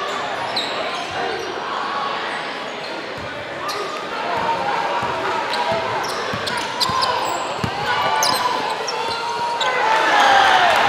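Live basketball game in a gym: crowd chatter and shouts echoing in the hall, the ball bouncing on the hardwood, and short high sneaker squeaks on the court floor.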